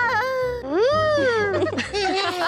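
Cartoon boys' voices moaning in pain, aching all over from rowing. A long wavering groan trails off at the start, then a second moan rises and falls about half a second in.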